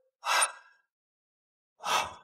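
A man's two short, breathy gasps, about a second and a half apart.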